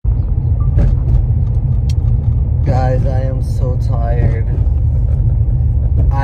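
Steady low rumble of a moving car heard from inside the cabin, starting abruptly, with a man's voice briefly about halfway through.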